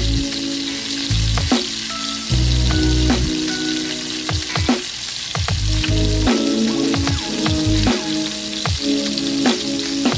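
Breadcrumb-coated mashed potato patty deep-frying in hot oil: a steady sizzling hiss with scattered crackles and pops all through.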